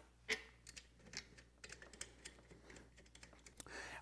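Faint scattered clicks and taps of hands handling a bar clamp's aluminum extension strip and its bolts, with one sharper click just after the start.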